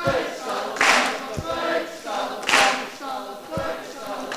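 A large crowd singing a chant together. A loud noisy burst breaks in about every one and a half seconds, twice in all.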